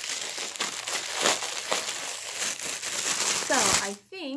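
Crinkly wrapping of a mailed package being handled and torn open: a dense, continuous run of crackles and rustles.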